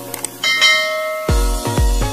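Two short click sound effects, then a bright bell-like notification ding about half a second in that rings on and fades. Music with a heavy bass beat starts just over a second in.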